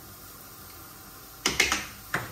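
A short run of quick clicks and knocks from kitchen utensils and cookware about one and a half seconds in, after a quiet stretch.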